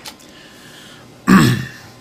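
A man clears his throat once, in a short rough burst about a second and a quarter in.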